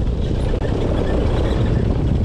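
Honda 450 off-roader's single-cylinder four-stroke engine running steadily while riding along a dirt trail.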